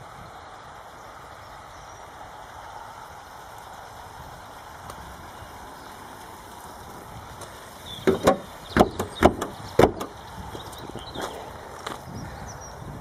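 A car bonnet being lowered and shut: after several seconds of faint steady background noise, a quick run of clicks and knocks about eight seconds in ends in one loudest bang near ten seconds.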